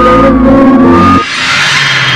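Film background music with sustained tones cuts off suddenly a little over a second in. It gives way to loud street traffic noise from a car close by.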